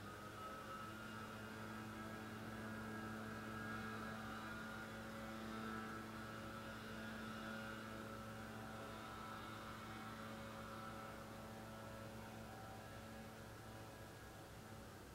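Faint steady mechanical hum, rising in pitch at the start, then holding one pitch before fading out near the end.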